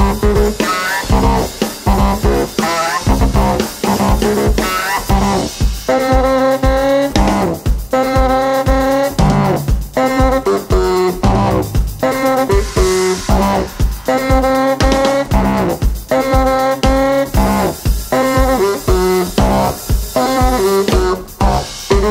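Baritone saxophone and drum kit playing live. The sax plays short stabbing notes for the first few seconds, then long notes held about a second each, over a steady kick-drum beat.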